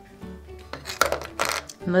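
Wooden game piece tipped off a wooden spoon into a cardboard pot, knocking twice about a second in, over soft background guitar music.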